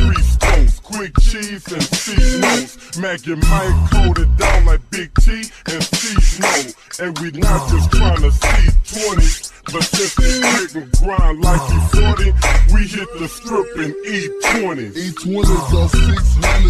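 Slowed-and-chopped hip hop: a pitched-down rap vocal over a beat with deep, repeated bass hits.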